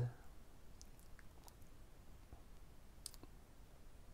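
A quiet pause with a few faint, brief clicks, the clearest about three seconds in.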